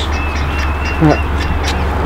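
A bird calling: one thin, slightly wavering whistle lasting about a second and a half, over a steady low rumble.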